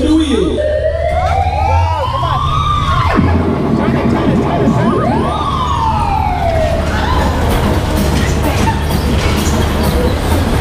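Wailing siren, likely the bumper car ride's start signal: one slow rising sweep that cuts off about three seconds in, then a second sweep that rises quickly and falls away by about seven seconds. A steady low hum runs underneath.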